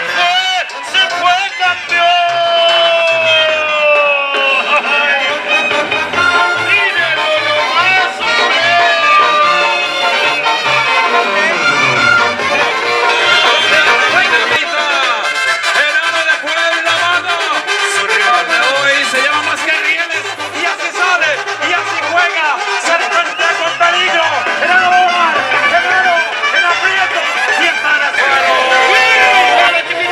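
Live Mexican brass band music playing throughout, with short repeating bass notes under the brass, and voices in the background.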